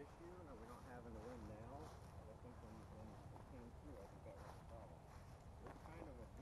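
A person's voice talking faintly, the words not made out, over a low steady rumble.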